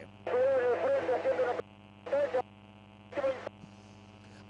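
A man's voice in three short bursts on a radio broadcast feed, with a steady low electrical hum under it.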